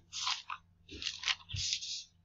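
Thin Bible pages being turned and rustled by hand, in three or four short crinkly bursts, as the reader leafs ahead to Matthew 16.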